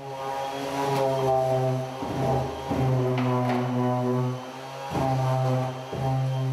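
Electric palm sander running against a fiberglass surface: a steady, low buzzing hum at one pitch that dips briefly a few times.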